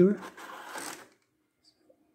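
Brief crinkling rattle of a clear plastic blister tray being handled, lasting under a second.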